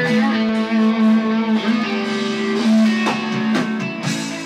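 Electric guitar played through an amplifier, holding long sustained notes, with a couple of sharp accents about three seconds in.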